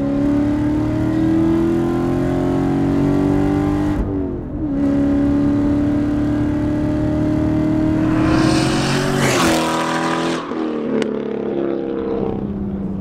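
C7 Corvette Stingray's 6.2-litre LT1 V8 accelerating under load with a steadily rising note. About four seconds in, the revs drop sharply on an upshift of the 7-speed manual, then climb again. Near the end a short rush of noise comes as the throttle lifts, and the engine settles lower.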